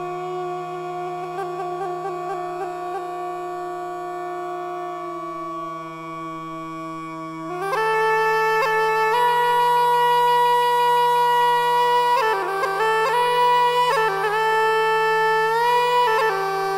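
Reed wind instrument playing a slow melody over a steady low drone, in a reconstruction of ancient Egyptian music. About halfway through, the melody gets louder and climbs higher, moving in long held notes that step up and down.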